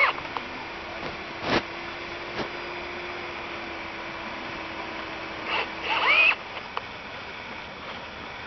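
Cordless drill driving a self-tapping screw into a galvanised steel tube. The motor whines up in pitch right at the start and again for about a second near six seconds in, with a sharp click about a second and a half in.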